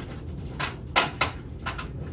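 About five short, sharp clacks and knocks of objects handled on a table, the loudest about a second in, with a quick pair near the end.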